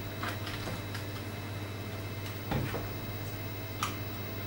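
Scattered light clicks and a duller knock about two and a half seconds in as plastic bottles are handled and capped on a towel-covered table, over a steady low hum.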